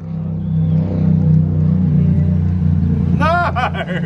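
Steady low drone of a running engine, swelling slightly about a second in.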